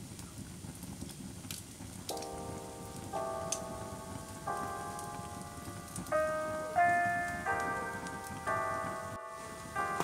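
Wood fire crackling in a stove, scattered sharp pops over a low hiss. About two seconds in, slow, soft keyboard music comes in over it, a new sustained note or chord about every second, growing louder.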